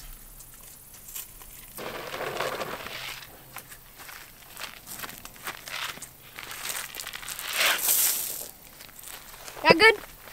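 Grain poured from a plastic container and scattering onto grass and dirt: two spells of rustling hiss, the second louder, with small clicks of handling and footsteps on grass.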